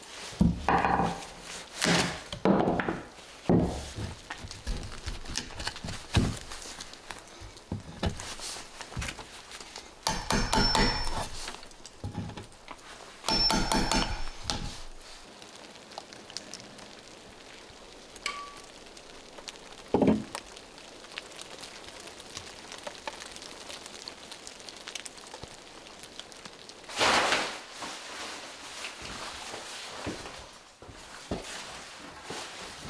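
Claw hammer striking a chisel cut into the end of a wooden board: a run of sharp wooden knocks in the first few seconds. Two short, dense rattling bursts follow about ten and thirteen seconds in, with single knocks near twenty and twenty-seven seconds.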